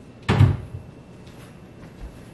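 Kitchen wall cabinet door pushed shut: one solid knock about a third of a second in, with a short tail.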